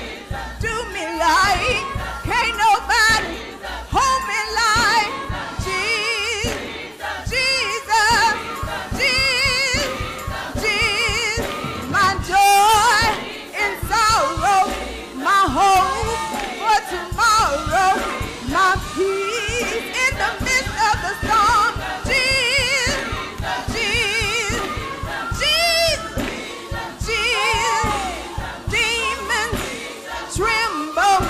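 Live gospel song: a woman singing lead through a microphone, her held notes wavering with vibrato, backed by a choir and a band with a steady beat.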